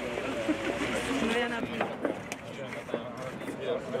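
Indistinct talk from several people in a group, with a few short clicks in the middle.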